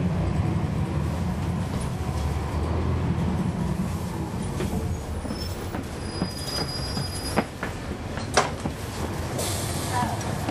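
On board a NABI 40-SFW transit bus, its Cummins ISL9 diesel engine runs with a steady low rumble that eases off about halfway through. A brief high squeal follows, then two sharp knocks and a short hiss near the end.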